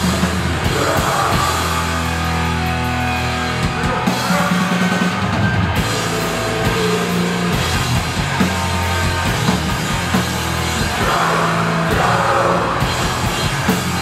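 A live heavy band playing loud: distorted electric guitars and bass holding low notes over a drum kit with steady cymbals.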